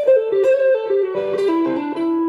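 Electric guitar playing a quick single-note legato line from an A minor pentatonic lick, stepping through short notes and ending on a longer held note near the end.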